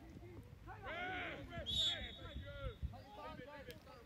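Players' voices calling across the pitch, with one referee's whistle blast a little under two seconds in that lasts most of a second: the whistle for a foul.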